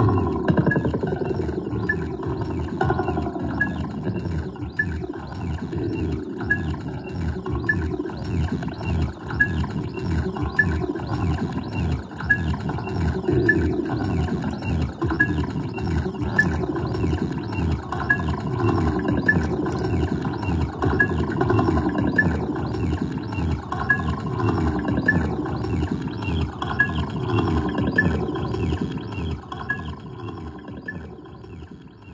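No-input feedback-loop noise through a chain of guitar effects pedals (tremolo, Boss SL-2 Slicer, Alexander Syntax Error): layered looped phrases of rapidly chopped, stuttering electronic tone with low downward sweeps repeating every couple of seconds and a short high blip about once a second.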